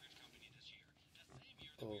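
Speech only: faint, low voices, then a man's voice a little louder near the end.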